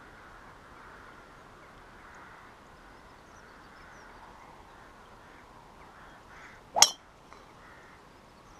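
A golf club striking a teed-up ball on a tee shot: one sharp, clean impact near the end, over faint steady outdoor background noise.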